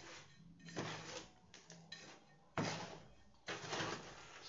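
Metal garden trowel scraping and scooping through a dry, gritty mix of crushed charcoal and carbonized rice husk in a plastic tub, a rustling hiss with three louder scoops.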